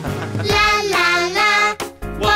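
A children's song: a child's voice sings over backing music, holding notes with a slight waver, and breaks off shortly before the end.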